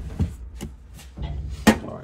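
A cardboard box being handled and opened, with scuffing and knocks against a hard appliance top. The loudest sound is a sharp knock near the end.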